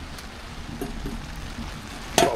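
Steady rain falling on the tent's fabric, with a couple of faint metallic clicks as the small wood stove's round hob lid is lowered back over the fire with a wire lifter hook.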